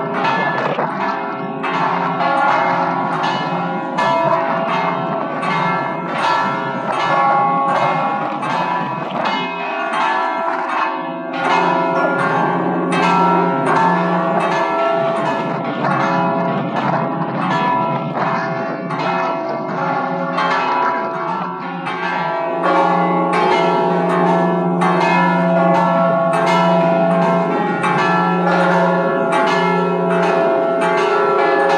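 A five-bell Maltese church peal (mota), the bells tuned F sharp, E, C sharp and C, ringing together in quick, overlapping strokes without a break. The peal grows a little louder about two-thirds of the way through.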